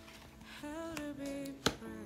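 A card laid down on a cloth-covered table: one sharp tap about three quarters of the way in, with a soft spoken word just before it.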